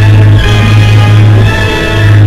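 Newsreel soundtrack music in a pause of the narration: sustained chords over a strong, steady low drone.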